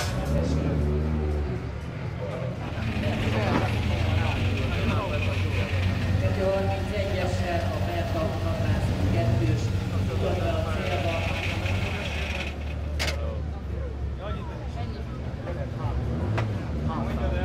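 A Peugeot rally car's engine running at low revs with a steady drone as the car creeps up the finish podium ramp. Voices talk over it, and there is one sharp click near the end.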